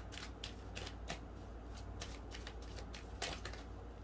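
A deck of tarot cards being shuffled by hand: a string of light, irregular flicks and slaps of card on card, a few a second.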